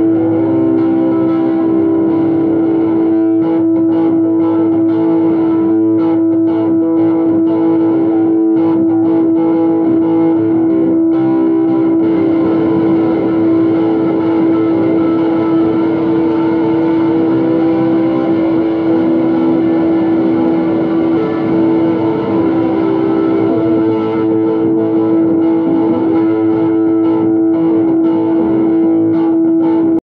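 Distorted electric guitar holding one steady sustained note, with shifting overtones warbling above it.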